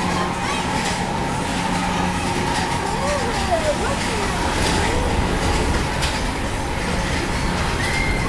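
Steady rumble and hum of a PeopleMover ride train gliding along its track, with faint voices in the background.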